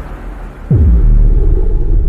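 Trailer sound-design hit: about two-thirds of a second in, a sudden loud impact whose pitch drops steeply, leaving a deep sustained rumble.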